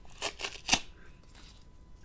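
A small kraft-paper coin envelope being unfolded and opened by hand: a few crisp paper rustles and crinkles in the first second, the sharpest just under a second in, then faint handling.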